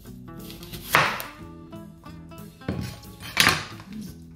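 Kitchen knife cutting green apple wedges on a wooden chopping board, with two loud knocks and scrapes of the blade on the board, about a second in and again past the middle, over background music.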